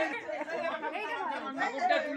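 Several people talking at once: overlapping chatter in a crowded room.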